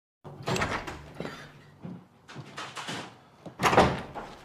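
Paper rustling as the pages of a folder are turned, then a louder door opening shortly before the end.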